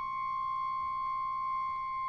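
Contemporary chamber-ensemble music reduced to a single high, nearly pure tone held steady, with the rest of the ensemble silent.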